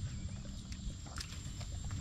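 Basset hounds nosing and stepping about in grass on rubber matting: scattered small clicks and rustles over a steady low rumble, with a thin, steady high-pitched whine.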